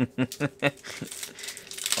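A short laugh, then a foil baseball-card pack crinkling as it is torn open.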